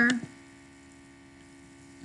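Faint steady electrical hum in the recording, with a few fixed tones and no rhythm, after a voice trails off at the very start.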